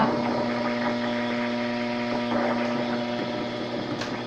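Acoustic guitar chord left ringing after strumming, its steady notes slowly fading, with a couple of strings dying away partway through.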